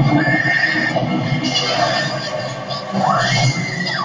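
Television soundtrack heard through the set's speaker: a dense noisy bed, with a high cry that rises about three seconds in, holds, then breaks off at the end.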